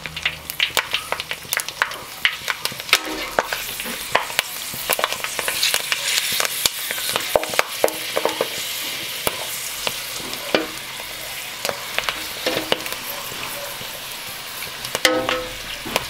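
Dried pork skins deep-frying in hot oil, sizzling with dense crackling and popping as they puff up into pork rinds.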